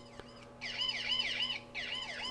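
Rexing P1 body camera's built-in speaker sounding its panic-alarm siren, set off by holding down the OK button: a quiet, fast rising-and-falling yelp of about five cycles a second. It starts about half a second in and breaks off briefly near the end.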